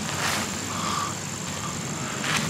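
Hands raking and crumbling loose potting mix, a soft rustling over a steady background hiss and low hum, with a faint brief tone about a second in.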